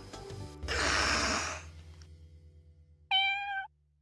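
Closing music ends on a burst of noise about half a second in that fades away, then a single short cat meow about three seconds in, the sound of the production logo.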